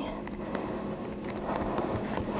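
Soft, faint rubbing of fingertips pressing gum paste down against the edges of a plastic cutter, over a low steady hum.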